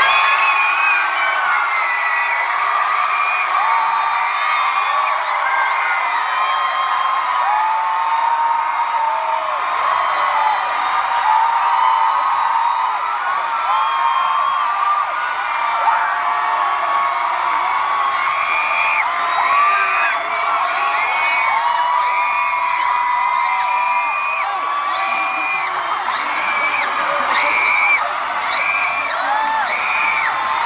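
A large concert crowd screaming as loud as it can on cue after a count of three: a dense, sustained, high-pitched scream from many voices. In the second half the screams fall into a rhythm of shrieks about once a second.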